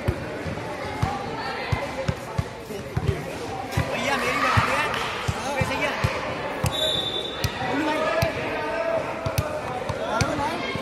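Basketball bouncing on a concrete court, a run of irregular thuds, over the shouts and chatter of players and onlookers. A short high steady tone sounds about two-thirds of the way through.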